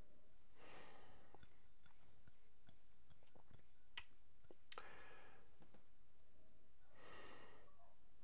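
Soft breaths through the nose of a man nosing a glass of whisky: three quiet breaths, about a second in, around five seconds and near the end, with a few faint clicks between.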